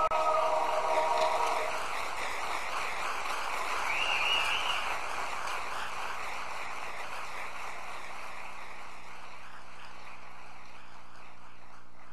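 A men's barbershop chorus ends on a held chord that dies away in the first couple of seconds, then audience applause, which slowly fades. A short whistle from the audience comes about four seconds in.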